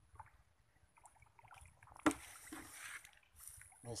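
A sudden water splash about halfway through, fading over about a second, from milkfish striking floating feed at the pond surface.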